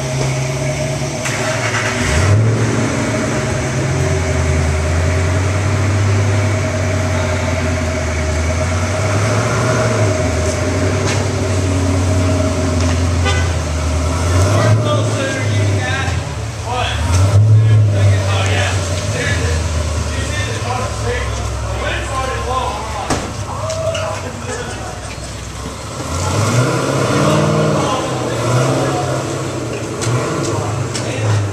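Hot rod engines running at low speed as cars roll slowly past, their deep rumble rising and falling several times, with people talking over it.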